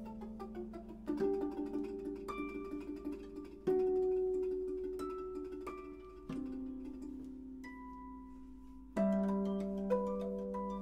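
Two harps playing a slow duet: plucked melody notes ring over sustained low notes, with a new chord struck about every two and a half seconds.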